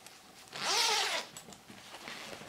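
Zipper on a crocheted handbag being pulled open in one quick pull lasting well under a second, about half a second in.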